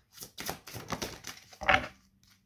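A deck of oracle cards being shuffled by hand: a run of quick, irregular card clicks and flicks, loudest a little before the end.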